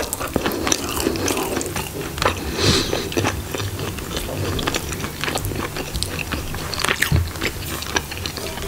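Close-miked eating sounds: chewing and wet mouth noises while eating chicken curry with rice, with fingers squishing rice and gravy. A continuous run of short, sticky clicks and crackles.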